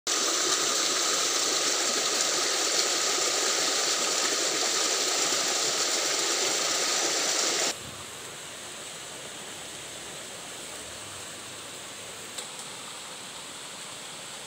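A loud, steady rushing noise that cuts off suddenly about eight seconds in, giving way to a much quieter outdoor background with one faint click near the end.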